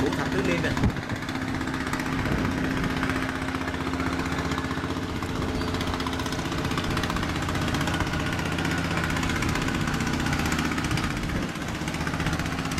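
An engine running steadily at a constant speed.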